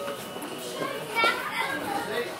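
Children talking and calling out in a large, echoing hall, with one child's voice rising louder a little after a second in.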